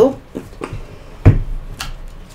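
A deck of tarot cards being handled and tapped on a desk: a few short, sharp slaps and clicks, the loudest a little past halfway with a dull thud.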